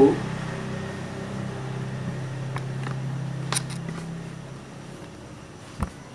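Handling noise from a pleated batik cloth being folded in the hands: a few sharp clicks, and a short thump near the end. A steady low hum runs underneath and fades out about four seconds in.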